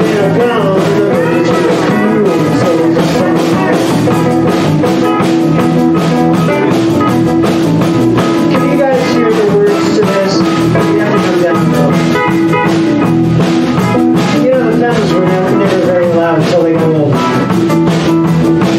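Live electric blues band playing an improvised jam: keyboard, bass, electric guitar and pedal steel guitar over a steady beat, with sliding, bending lead lines.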